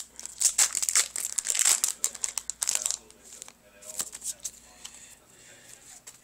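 Foil wrapper of a Pokémon trading card booster pack crinkling and tearing as it is opened, dense for about three seconds. Then a few light clicks and softer rustling as the cards are handled.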